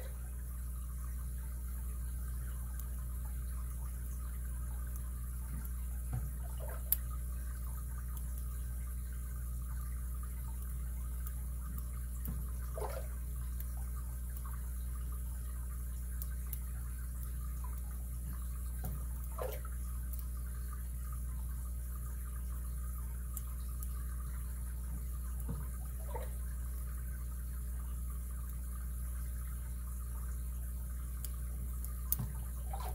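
A lock pick and tension wrench working the pins of a six-pin Abus 72/40 brass padlock, giving a few faint clicks, one sharper tick about seven seconds in, over a steady low hum.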